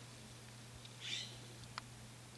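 A kitten gives a single faint, high-pitched mew about a second in, followed shortly by a soft click.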